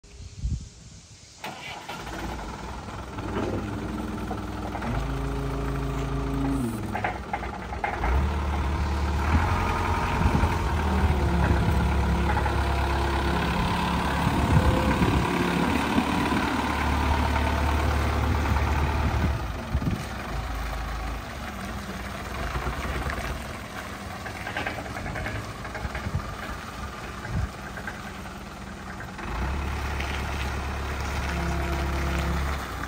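Diesel engine of an Asea GDA 63 6.3-ton forklift starting up about a second and a half in, then running with its revs rising and falling as the forklift drives. It is loudest through the middle stretch.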